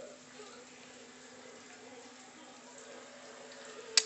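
Quiet kitchen background: a faint steady hum under a low hiss, with one sharp click near the end.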